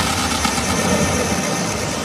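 Tech house music in a breakdown: the kick drum has dropped out, leaving a dense, rumbling wash of noise with no beat.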